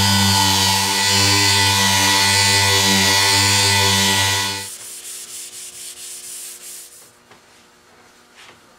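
Electric sander fitted with a buffing pad running steadily, with a motor hum and a rushing hiss as it buffs paste wax over a shellac finish. It switches off about four and a half seconds in, and fainter, uneven rubbing follows for a couple of seconds.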